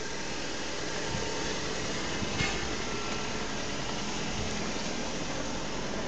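Steady whooshing background noise, like a fan or air-conditioning unit running, with a faint click about two and a half seconds in.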